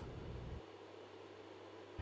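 Faint steady hiss, with a low steady hum that settles in about half a second in: background noise with no distinct event.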